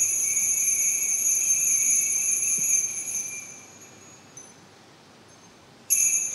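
Altar bell rung at the elevation of the chalice: a steady bright ringing that fades away about three to four seconds in, then is rung again just at the end.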